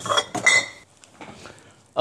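A few clinks and clatters of small hard objects being handled in the first second, one of them ringing briefly, then quiet room tone.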